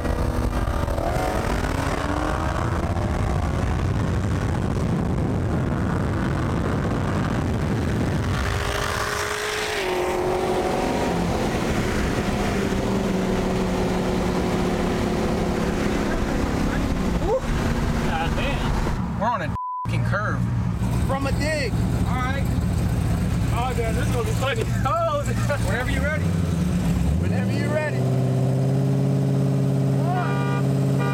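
V8 muscle-car engines running at low speed side by side, a steady exhaust drone whose pitch shifts as they change speed. Near the end one engine's note rises and settles at a higher steady pitch.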